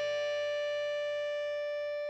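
A held electric guitar chord ringing out and slowly fading, with one steady tone standing out above the rest.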